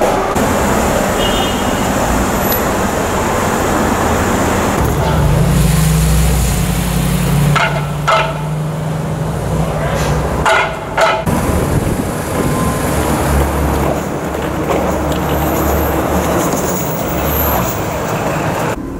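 City street traffic noise with car engines running. A steady low engine drone comes through for several seconds around the middle.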